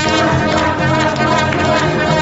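Live swing jazz band playing, with brass to the fore over upright bass and drums.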